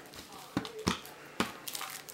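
Sealed playing-card boxes handled and set down on a table: three light, sharp taps in just over a second as the boxes knock together and touch down.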